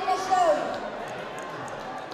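A woman speaking into a lectern microphone over a public-address system, her voice trailing off about half a second in; after that, low crowd murmur with a few faint knocks.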